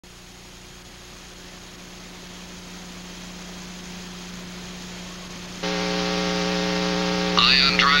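A steady low hum with faint hiss, slowly growing louder. About five and a half seconds in, a louder buzzing drone with many steady overtones cuts in suddenly.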